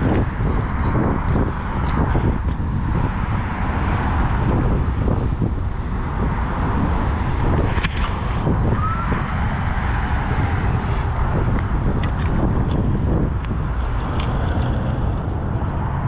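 Handling noise from a body-worn action camera being moved and covered: a steady low rumble with rustling and a few faint clicks.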